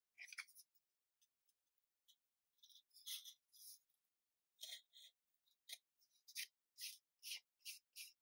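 Small pin-vise hand drill with a 2 to 2.5 mm bit twisting through thin plywood: a series of short, faint scratchy rasps. They come irregularly at first, then about two to three a second in the second half.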